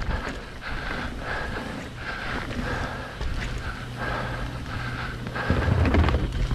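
Hardtail mountain bike rolling down a dirt and gravel trail: tyre noise with the rattle of the frame and chain over the rough ground, and wind on the camera microphone. A heavier low rumble comes near the end.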